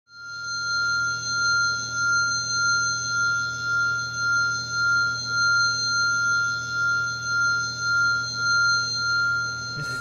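A sustained high ringing tone over a low hum, fading in at the start and swelling and fading a little under twice a second; it cuts off abruptly just before the end.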